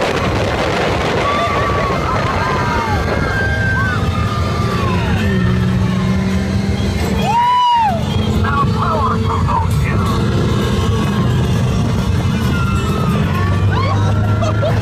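Open-top ride car speeding along its track: a steady rush of wind on the microphone over a low drone, with music and short rising-and-falling cries of riders, the loudest cry about halfway through.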